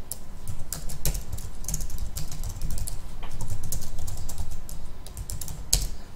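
Computer keyboard typing: an irregular run of key clicks as commands are entered at a command prompt, with a couple of keystrokes louder than the rest.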